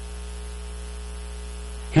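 Steady low electrical mains hum with a faint hiss, unchanging throughout.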